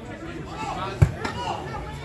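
A football kicked once with a sharp thud about a second in, over faint spectators' voices.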